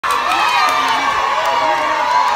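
A crowd of people cheering and shouting, many voices overlapping at once without a break.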